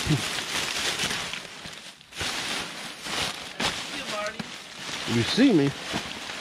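Plastic trash bags, paper and packaging rustling and crinkling as hands dig through a dumpster, with a brief pause about two seconds in. A short vocal sound comes near the end.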